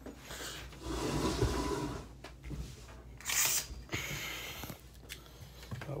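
Handling noise from a hand-held phone being carried: fingers and clothing rubbing on the microphone in several short rustling scrapes, with a click near the end.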